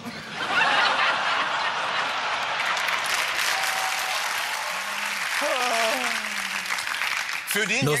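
An audience applauding and laughing at a joke. The clapping starts about half a second in, holds steady, and fades near the end.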